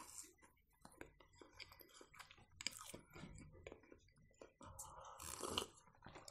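Faint chewing of a soft fried-dough baursak, with small wet mouth clicks, and a short breathy sound near the end.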